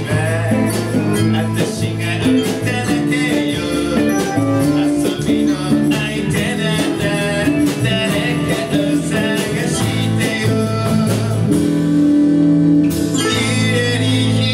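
Live band playing a pop song with drums, guitars, bass and keyboard and a lead vocal, with a steady beat.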